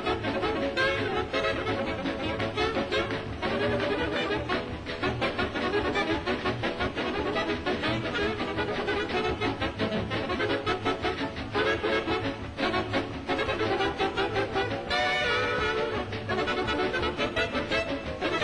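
Big dance band playing hot jazz, with a saxophone section and brass over a steady rhythmic beat.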